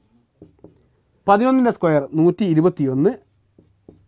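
A man speaks for about two seconds in the middle. Before and after his words come faint short scratches of a marker writing on a whiteboard.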